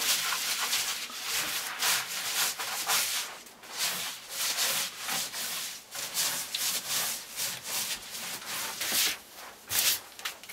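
A bundle of conifer branches swept briskly across round logs in repeated scratchy brushing strokes, a little more than one stroke a second, as the log bench and floor are swept clean.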